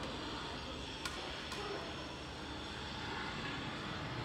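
Steady outdoor background noise with no clear single source, and two faint clicks about a second and a second and a half in.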